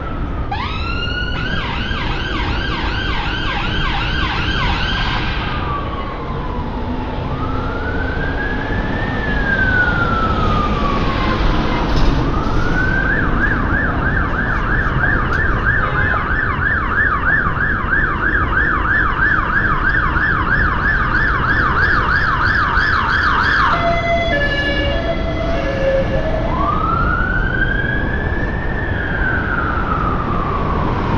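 Emergency vehicle siren switching between a slow rising-and-falling wail and a rapid yelp of several sweeps a second. Near the end there is a brief stepped, alternating-tone pattern before the wail returns. Steady street traffic runs underneath.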